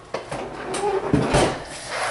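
Kitchen handling noises as a metal baking sheet of candies is taken out of a freezer: a few clicks and rattles, then a low thump about a second in, like the freezer door shutting.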